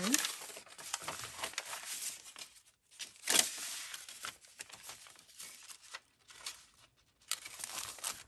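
Sheets of paper rustling as a stack of journal pages is handled and leafed through, in irregular bursts, the loudest about three and a half seconds in.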